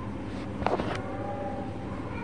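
Cat's fur rubbing against the phone's microphone, with a brief rustle about two-thirds of a second in, over a steady low hum.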